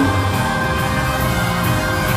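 Gospel choir singing with instrumental accompaniment: long held notes over a bass line and a light, steady cymbal beat.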